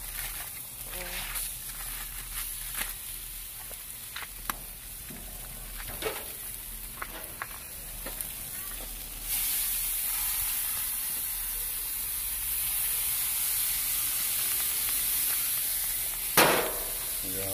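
Chicken quarters sizzling on a hot gas grill, with scattered crackles and clicks. About nine seconds in, the sizzle jumps to a louder, steady hiss as sauce is poured over the chicken.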